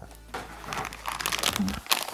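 Clear plastic bag with the HDMI cables inside crinkling as it is picked up and handled, starting about a third of a second in and getting busier.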